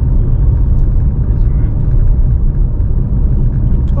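Steady low rumble of a Chery Tiggo 7 Pro on the move: road and engine noise heard from inside the cabin.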